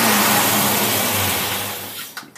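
Engine fed by a Predator carburetor running steadily at raised speed, its sound falling away over the last half second.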